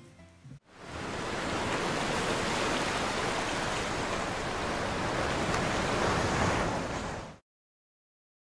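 Steady rushing-water sound effect, like surf, starting about half a second in and stopping shortly before the end.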